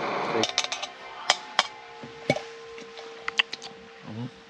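A gas camping stove's burner hissing, cut off abruptly about half a second in, followed by a few scattered sharp clicks over a faint steady hum.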